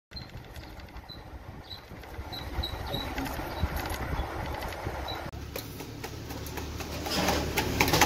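Street ambience with a small engine running and short high chirps in the first half. The sound changes abruptly a little after five seconds and grows louder, with rapid clattering and knocks.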